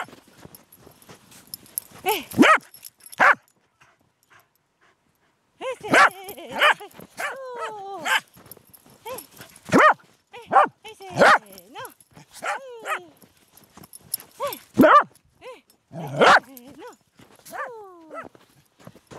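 A corgi barking over and over in short, excited barks. There is a gap of about two seconds after the first few barks, then the barking runs on irregularly.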